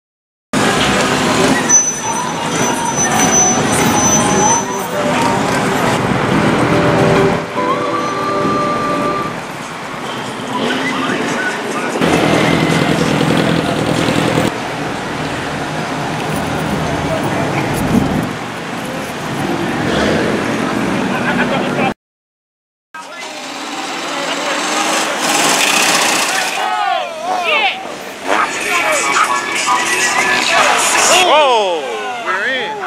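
Busy street noise: car engines, indistinct voices and music mixed together, broken by about a second of silence about three-quarters of the way through, with rising and falling squeals near the end.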